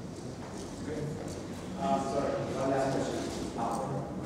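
Indistinct speech, a man's voice, which picks up about two seconds in.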